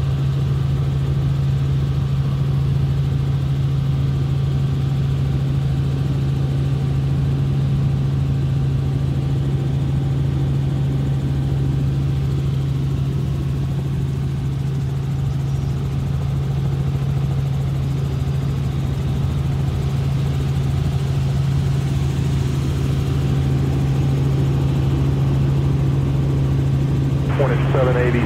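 Robinson R44 Raven II helicopter in cruise, heard from inside the cabin: the steady drone of its Lycoming IO-540 six-cylinder engine and rotors, with a strong, unchanging low hum.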